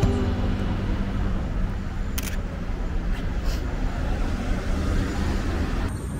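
City street traffic: cars driving past on the road, a steady rumble of engines and tyres. Two short sharp noises come about two and three and a half seconds in.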